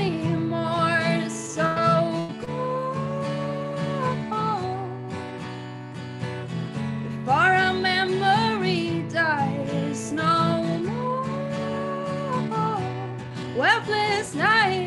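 Woman singing with a steadily strummed acoustic guitar, holding several long notes, heard through a Zoom call's audio.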